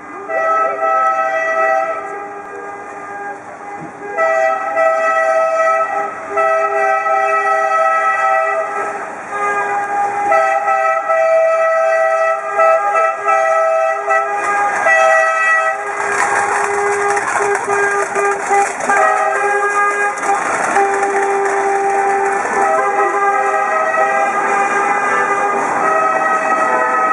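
Car horns honking in long held blasts with short breaks, several horns of different pitch sounding together: the celebratory honking of a wedding convoy. From about two-thirds of the way in a rougher noise joins the horns.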